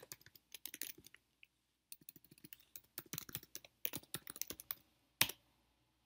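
Computer keyboard typing: quick runs of faint keystrokes as an address is typed, then one louder single click about five seconds in.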